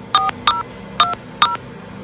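Touch-tone telephone keypad dialing: about five short two-tone beeps in quick, uneven succession.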